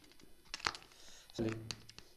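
A few sharp clicks and taps from a mobile phone being handled close to desk microphones. A short voiced syllable comes about one and a half seconds in.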